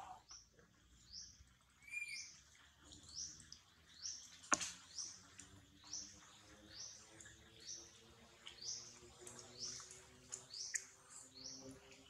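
A bird chirping over and over outdoors: short, high chirps, about two a second, with a single sharp click about four and a half seconds in.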